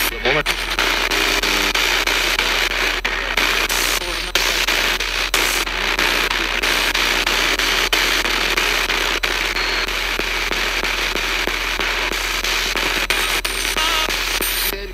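Spirit box radio sweeping through AM stations: a steady rush of static chopped by rapid clicks as it jumps from station to station, with broken snatches of broadcast voice.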